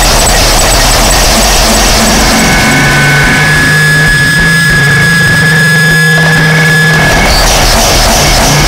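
Loud harsh noise / power electronics music: a dense wall of distorted noise. After about two and a half seconds it thins and steady held tones, one high and one low, come through. The full noise wash returns near the end.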